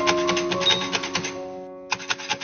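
Mechanical braille writer being typed: a quick run of sharp key-and-embossing clicks as its keys press dots into the paper, with a short pause just before the end. Background music with long held notes plays underneath.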